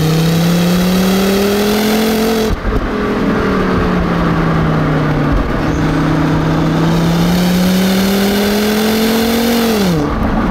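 Volvo V70R's turbocharged 2.5-litre five-cylinder engine under hard acceleration, its five-speed automatic in manual mode. The revs climb, drop abruptly about two and a half seconds in, hold level for a few seconds, climb steadily again and fall sharply near the end, as at gear changes.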